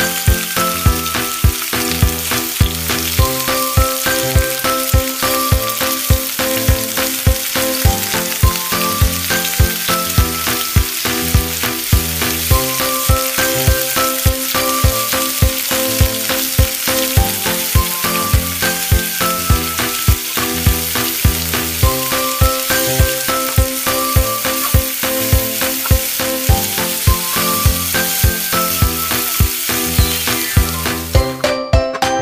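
Cabbage, carrots and green beans sizzling as they sauté in hot oil in a wok, with steady frying hiss throughout. Background music with a steady beat and a simple melody plays over it.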